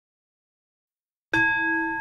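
Silence, then a meditation bell is struck once a little over a second in and rings on with several clear, steady tones.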